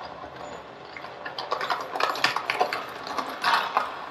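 Wheeled suitcase rattling over stone paving in irregular clicks and clatter, over a background of light city traffic.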